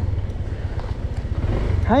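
Motor scooter engine running with a steady low rumble as the bike slows to pull up at the roadside.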